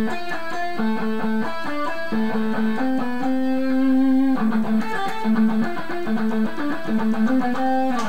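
Electric guitar playing a slow single-note scale exercise. Each short three-note figure stepping down the scale alternates with a repeated triplet pattern, the notes picked one at a time. One note is held for about a second around the middle.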